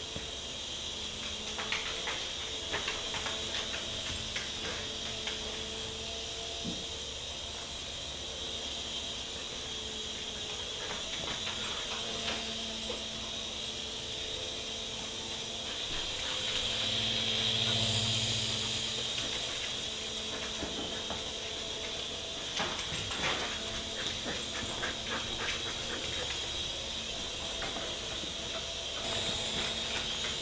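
Small toy remote-control helicopter's electric motor and rotor whirring steadily, swelling for a few seconds about halfway through as it flies close. Scattered clicks and taps come from a dog moving about on the wooden floor.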